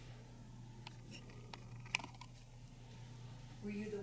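Faint steady hum with a few scattered clicks, one sharp and louder about two seconds in, then a voice begins near the end.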